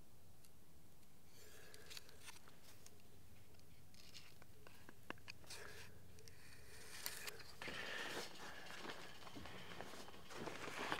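Faint scratching and a few light clicks of a metal square being handled and set against a timber, the sounds growing a little louder in the last couple of seconds.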